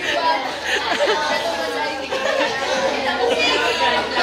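Chatter of many students talking over one another at once, with no single voice standing out.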